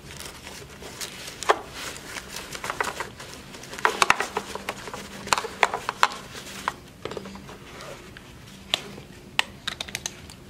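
Seatbelt webbing rustling and sliding against the plastic shell of a child car seat as it is fed through the belt path, with irregular sharp plastic clicks and knocks scattered throughout.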